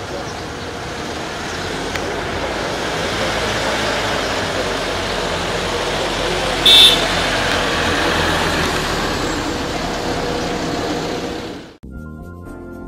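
Street traffic noise as an ambulance van drives off, with voices of onlookers mixed in and growing louder over the first half. A brief high-pitched sound, like a horn beep, about seven seconds in. The sound cuts off suddenly just before the end.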